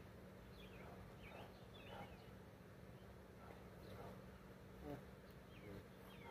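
Near silence: quiet outdoor ambience with a faint steady low hum and a few faint, scattered bird chirps.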